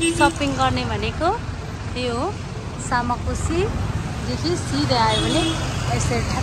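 People's voices in short stretches of talk over a steady rumble of street traffic.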